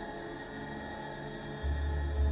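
Eerie background soundtrack music: a sustained drone of steady tones, with a deep bass note swelling in near the end.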